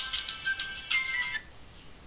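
Mobile phone ringtone playing a high, beeping melody for an incoming call, cutting off about one and a half seconds in.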